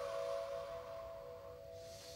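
A soft, steady held tone made of a few close pitches, slowly fading, from meditation background music.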